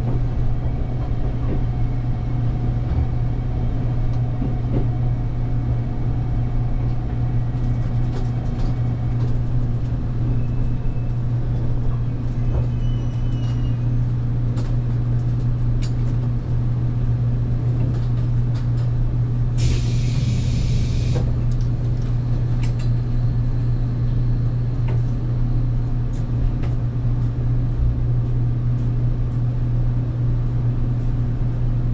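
Steady low hum from an electric express train's onboard equipment as it stands at a platform. About twenty seconds in comes a single burst of hissing compressed air lasting over a second.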